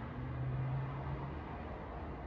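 Low steady room noise in a pause between speech, with a faint low hum held for about the first second.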